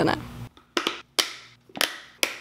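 Lids being pressed onto meal-prep containers: three sharp clicks about half a second apart, starting about a second in.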